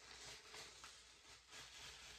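Near silence with faint soft rustling as a strip of masking tape is slowly peeled off a paper envelope.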